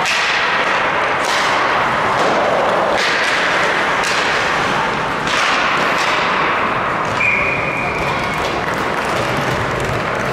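Ice hockey in play: skates scraping, with sticks and the puck hitting the ice and boards in sharp knocks. About seven seconds in, a referee's whistle sounds for about a second as play stops.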